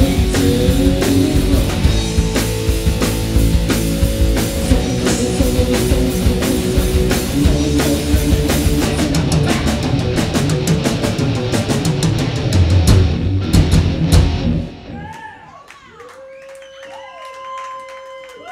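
Live three-piece rock band of electric guitar, bass and drum kit playing loudly, with cymbals crashing, until the music stops about fifteen seconds in. Afterwards there are quieter whoops and whistle-like calls from the audience.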